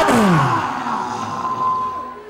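A person's voice trailing off in a falling wail or moan, its pitch sliding steeply down within the first half-second. A single steady tone holds after it.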